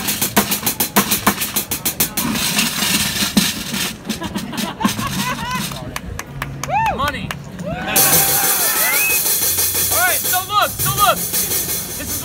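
Bucket drumming on plastic buckets and cymbals played with sticks, opening with a fast run of strikes in the first couple of seconds, with a bright cymbal-like wash and people's voices later on.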